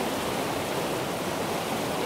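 River water rushing over rocks in small rapids: a steady, even noise.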